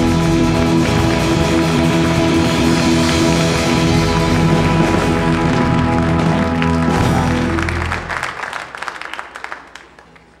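A live band with acoustic guitar, bass and drums holds the final chord of a song, which dies away about eight seconds in. Scattered clapping follows and fades out.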